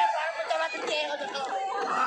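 Several voices talking over one another, a jumble of chatter.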